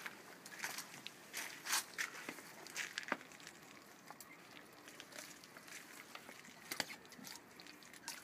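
Gloved hands gutting a sockeye salmon: irregular wet crackles, clicks and crunches of flesh and innards being worked, a few of them louder.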